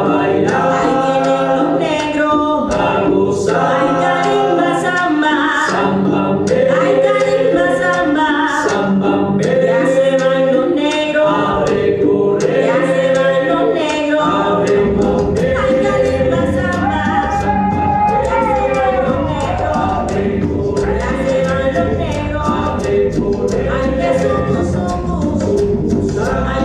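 Afro-Panamanian Congo song: voices singing together in chorus over a steady percussion beat. About halfway through, a deeper low part joins and fills out the bottom of the music.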